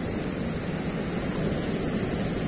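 Steady wind buffeting the microphone outdoors: a low, even rushing noise with no distinct events.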